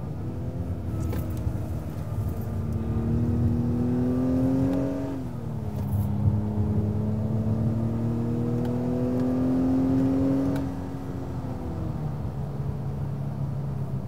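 2021 Acura TLX A-Spec's 2.0-litre turbocharged inline-four accelerating, heard from inside the cabin with sport mode's augmented exhaust sound piped in. The engine note rises steadily, drops at an upshift of the 10-speed automatic about five seconds in, rises again through the next gear, and falls away as the throttle eases near the end.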